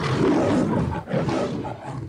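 Lion roaring, a recorded sound effect: a rough, deep roar in two swells, the second starting about a second in, ending just before speech begins.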